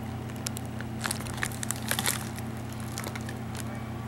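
Plastic padded mailer envelope crinkling as it is handled, in scattered short crackles that thin out in the second half, over a low steady hum.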